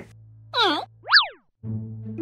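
Cartoon sound effects over children's backing music: a short warbling squiggle, then a whistle-like boing that slides up and back down. The music drops out for a moment just after and comes back near the end.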